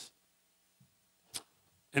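Pause in a man's talk: near silence with a single short click a little after halfway, then his voice starts again right at the end.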